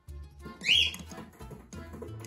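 Cockatiel giving one short, loud call that rises and falls in pitch, about two-thirds of a second in, over background music with a steady bass line.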